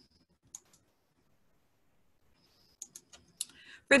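Short, faint clicks from a computer: a pair about half a second in, then a quick run of several near the end, as the presentation slide is advanced.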